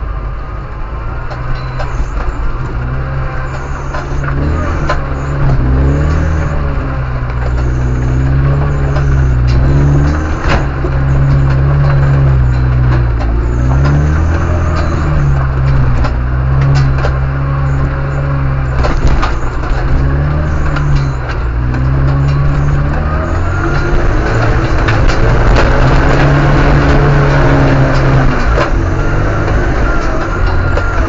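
Off-road vehicle's engine labouring through deep muddy forest ruts, its revs repeatedly rising and falling as the driver works the throttle, with scattered knocks as the vehicle bumps over the ruts.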